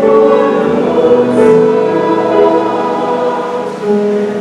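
Mixed church choir of men and women singing in parts, holding long sustained chords.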